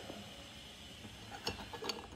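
Quiet chewing of a soft chocolate-chip bun, with two small mouth clicks near the end.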